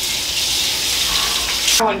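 Kitchen tap running into the sink as a French press is rinsed, shut off suddenly near the end.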